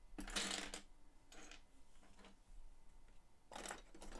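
Loose plastic LEGO Technic parts clattering and rustling as hands handle and sort pieces, in a few short bursts, the loudest about half a second in.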